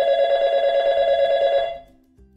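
A telephone ringing once: one trilling ring lasting nearly two seconds that fades out near the end.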